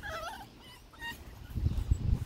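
A puppy whimpering in short, high, gliding whines during the first half-second, shut outside the pen and wanting in to play with the other puppies. A low muffled noise follows near the end.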